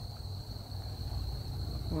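A cricket's steady high-pitched trill, one unbroken tone, over a low rumble.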